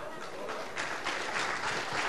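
Audience applauding, the clapping growing denser about a second in.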